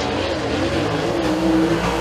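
Dirt super late model race car's V8 engine running hard on a qualifying lap, a continuous engine note that wavers up and down slightly in pitch.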